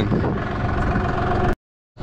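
Tractor engine idling steadily, cutting off abruptly about one and a half seconds in.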